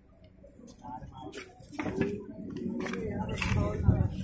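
Indistinct voices of people talking, rising from near quiet about a second in, with a few sharp knocks mixed in.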